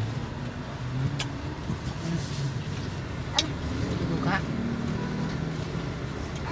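Car engine idling, a steady low hum heard inside the cabin, with a few sharp clicks: one about a second in and two more around three and a half and four and a half seconds.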